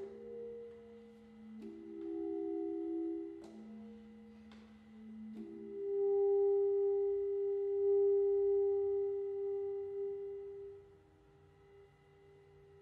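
Solo saxophone playing sustained notes, often two pitches sounding at once, changing with sharp attacks every second or two. Then one long held note dies away near the end.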